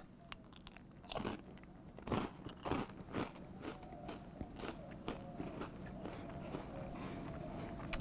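Crunching and chewing of a caramel-glazed Corn Pops Jumbo Snax cereal piece: several sharp crunches in the first few seconds, fading into softer chewing.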